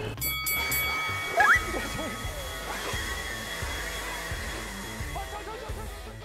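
Milwaukee cordless leaf blowers running, a steady rush of air with a high motor whine, with a short rising whine as one speeds up about a second and a half in; background music plays under it.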